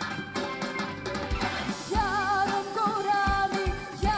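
A woman's solo singing voice, with a wide vibrato on held notes, coming in about halfway through over a band backing with drum beats.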